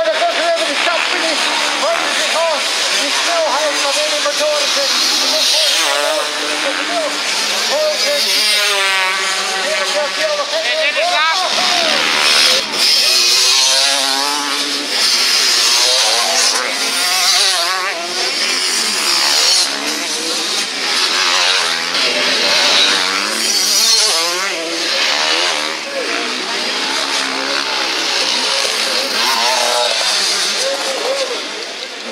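Motocross bike engines revving, the pitch sweeping up and down repeatedly as riders accelerate and shift past on the dirt track.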